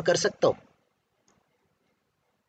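A voice finishes a word in the first half-second, then near silence for the rest.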